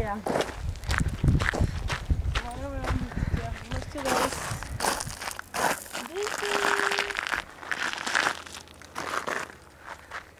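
Footsteps crunching on a gravel path, an irregular run of scuffs and crackles, with a noisier stretch of rushing sound in the middle. Brief murmured voices.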